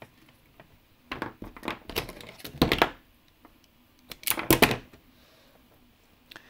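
Handling noise from a wire being worked among small plastic parts: two bursts of clicks and rustles, about a second in and again about four seconds in, with quiet between.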